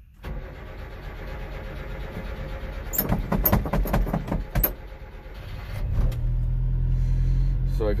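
1990 Subaru Sambar mini truck's carbureted engine cranking on the starter, with a few sputters and firings a few seconds in. It catches about six seconds in and settles into a steady idle. This is a cold start after sitting about a month, with the throttle pumped while cranking.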